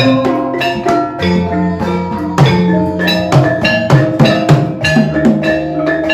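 Gamelan ensemble playing: bronze kettle gongs and metallophones ring out a melody of struck notes over kendang hand-drum strokes in a steady rhythm.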